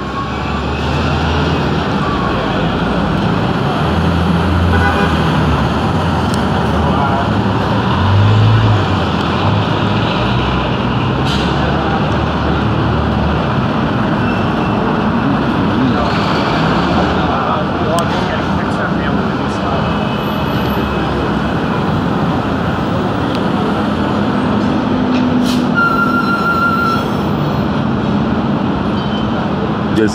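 Loud, steady city street traffic and construction-site din, with a low engine rumble in the first half and a few sharp knocks scattered through it.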